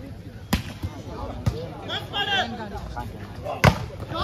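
Volleyball slapped by hand during a rally: a sharp hit about half a second in, a lighter touch a second later, and the loudest hit near the end as the ball is spiked at the net. Short shouts come between the hits.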